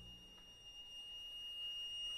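Quiet passage of orchestral music: one very high, steady held note, while the low notes of the previous chord fade away shortly after the start.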